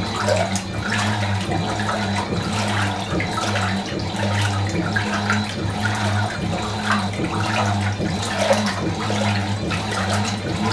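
Fisher & Paykel MW512 top-loading washing machine agitating a load of clothes in water: water sloshing and churning, with a motor hum that drops out and comes back every second or two.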